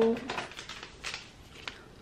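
Paper tea-bag sachets being sorted through by hand: soft rustling with a few light clicks.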